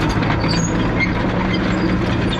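Caterpillar 953C track loader travelling away over dirt: its diesel engine running steadily under the clatter of its steel tracks, with short high squeaks throughout.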